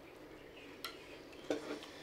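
Chopsticks clicking and scraping against small bowls at a family meal: a sharp click a little under a second in, then a louder clatter about halfway through, followed by a few light taps.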